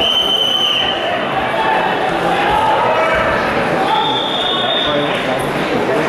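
A referee's whistle blown once for about a second, starting the wrestling bout, over a steady hubbub of spectators' voices echoing in a large sports hall. A second, higher whistle sounds for about a second later on.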